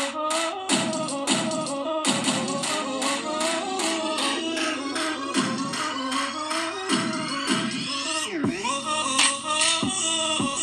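Electronic music with a steady, fast beat playing through a small VicTsing wireless Bluetooth shower speaker. About eight and a half seconds in, a falling sweep leads into deeper bass.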